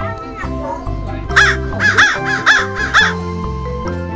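A black corvid in an aviary cawing: a run of about five harsh caws roughly half a second apart, starting about a second and a half in, over steady background music.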